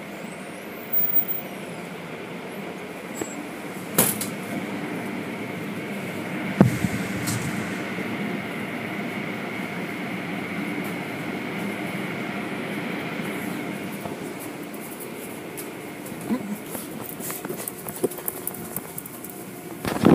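Automatic tunnel car wash machinery running: cloth-strip brushes and foam applicators working over a car, with a steady mechanical rumble and a faint high whine. A few sharp knocks at about one, four and six and a half seconds in, and a patter of clicks near the end.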